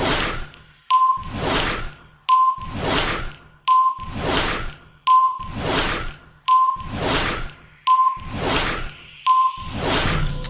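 Produced sound effects: a short high beep followed by a swelling whoosh, the pair repeating at an even pace about every second and a half, seven times over.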